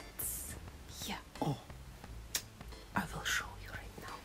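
A woman speaking softly in a breathy whisper, in short phrases.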